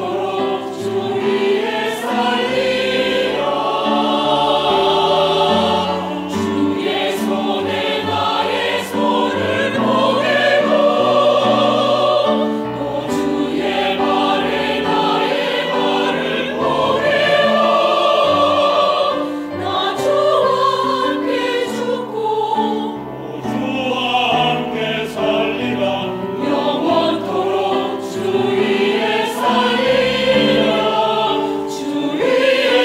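Mixed church choir singing a Korean hymn in Korean, in sustained, full-voiced harmony.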